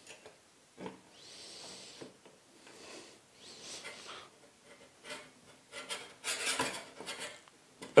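Faint scraping and rubbing of a metal Parf Guide System ruler and its locating pin being worked into a hole in the guide block by hand, with light metal clicks that bunch up about three-quarters of the way through as it settles into place.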